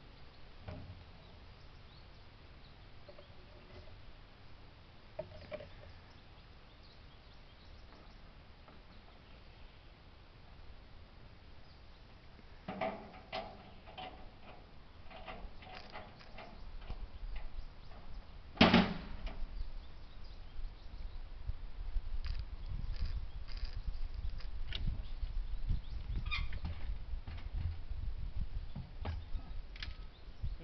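Scattered metal clunks and knocks from handling an old Ford tractor, with the loudest single knock about 19 seconds in. A low rumble builds through the second half.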